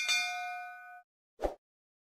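Notification-bell 'ding' sound effect of a YouTube subscribe animation: one bright metallic chime that rings out for about a second as the bell icon is clicked. A short soft pop follows about a second and a half in.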